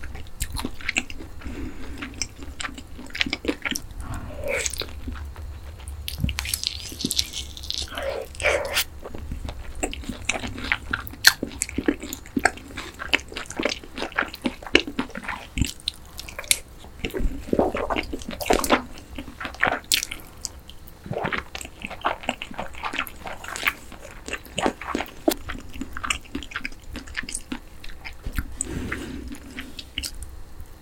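Close-up chewing and biting of boneless seasoned (yangnyeom) fried chicken, with many irregular sharp crunches as the fried coating is bitten and chewed.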